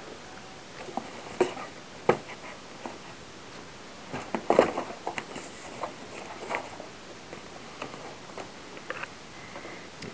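Scattered light clicks and rustles of hands handling an RCA video cable and plugging it into the projector's input panel, with a busier run of clicks about four to five seconds in.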